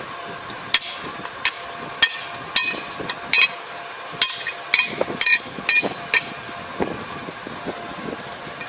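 Hammer blows on the bent metal tine of a Kubota ER470 combine laid on a wooden block, hammering it straight. About a dozen sharp metallic strikes with a brief ring, at an uneven pace of one or two a second, stopping about six seconds in.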